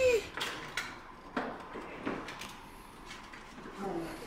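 A voice trails off at the very start, then a few scattered light knocks and clicks of handling, spaced irregularly over a low background.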